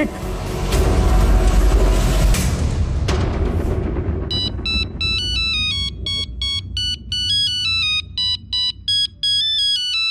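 A loud dramatic music swell with a deep rumble for the first three to four seconds, fading out. Then a mobile phone's ringtone takes over from about four seconds in: a quick electronic melody of short notes stepping up and down in pitch, an incoming call.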